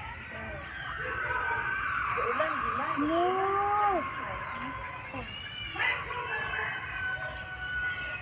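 A rooster crowing, one long drawn-out crow in the first half and a fainter call near the end, over the splashing of koi at the pond's surface.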